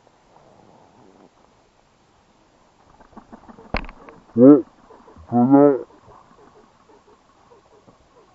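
A man's voice shouting twice, a short call then a longer drawn-out one, about halfway through, just after a sharp knock; faint rustling of vegetation otherwise.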